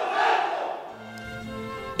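A formation of police cadets shouting together in unison, their sworn answer to the oath just read to them; the shout dies away about a second in as background music with sustained notes comes in.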